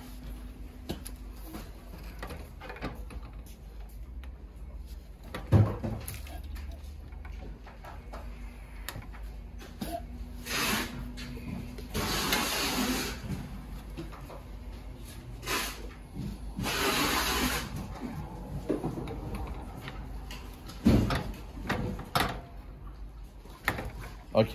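Clicks, knocks and rubbing from an industrial sewing machine head being handled and adjusted by hand, with a sharp knock about five seconds in and another near twenty-one seconds, and a few longer rushing sounds around twelve and seventeen seconds.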